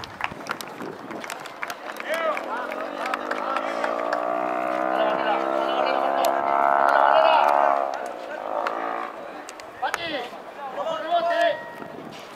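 Spectators' voices, with a steady pitched drone that swells over about six seconds and then drops away.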